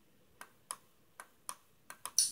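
Five faint, sharp clicks in an uneven rhythm, coming in pairs about a third of a second apart, over near silence.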